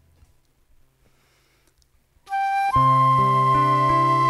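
Near silence for about two seconds, then a concert flute starts a song with a short note, and about half a second later accordion and guitar come in under the flute's long held high note.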